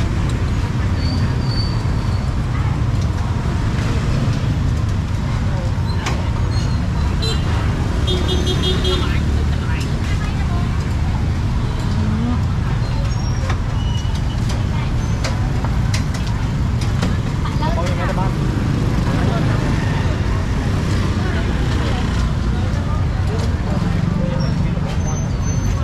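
Roadside street traffic: a steady rumble of motorbike and car engines going by, under background voices, with a short beeping about eight seconds in.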